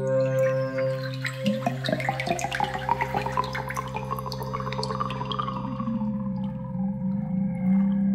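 Opening intro sting: a held synth chord with many quick bubbling, dripping sound effects scattered over it, thickest from about a second and a half in and thinning out near the end.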